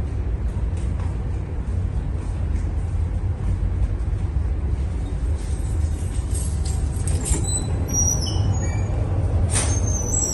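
Steady low rumble of a ship's engine and machinery, carried through the hull into the accommodation corridor. A few faint clicks and short squeaks come near the end, with a sharp click just before it ends.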